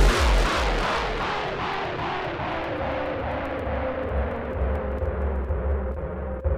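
Breakdown in a hardcore gabber mix: the pounding kick drums stop and a rumbling noise wash fades, its hiss sinking lower and lower, while a steady held note drones over a low rumble.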